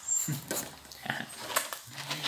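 Pomeranian making soft, short noises up close to the microphone, mixed with a few faint clicks.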